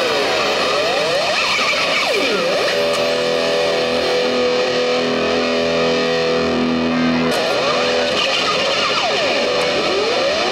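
Electric guitar played live through effects: swooping pitch glides up and down, a sustained chord held from about three to seven seconds in, then more swoops near the end.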